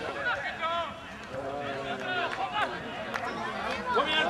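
Several voices shouting and calling out during a football match, overlapping, with no clear words.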